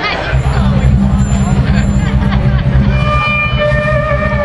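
A live band's amplified instruments start a loud, steady low drone just after the beginning. A held higher note comes in about three seconds in and sags slightly in pitch, over crowd chatter.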